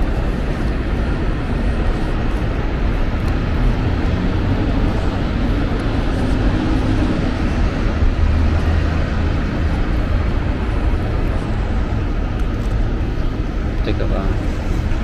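Steady low rumble of jet aircraft and road traffic around an airport terminal, swelling a little for a few seconds around the middle.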